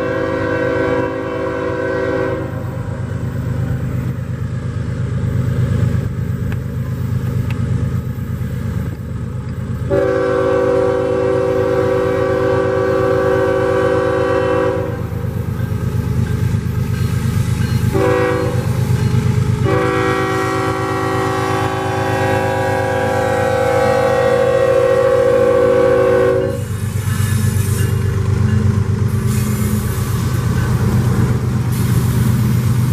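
CSX diesel freight locomotives' multi-note air horn blowing long, long, short, long for a grade crossing, over the steady low rumble of the diesel engines as the slow-moving train draws near. The horn tapers off once just after the start, then comes as a long blast, a short one and a longest one, ending a few seconds before the end.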